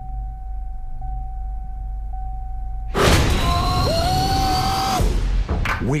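Trailer sound design: a steady electronic tone over a low rumble, with a small blip about once a second, for about three seconds. Then a sudden loud hit into music, with a whistling tone that rises and then holds.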